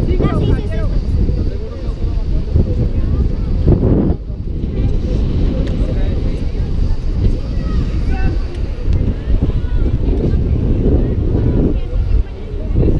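Wind buffeting an action camera's microphone: a loud, uneven low rumble that swells and drops, with a brief lull about four seconds in, over faint voices of people talking.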